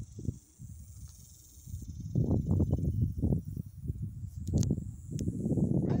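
Wind buffeting a phone microphone: gusty low rumbling that starts about two seconds in and turns to a steady rumble near the end, with a couple of faint clicks.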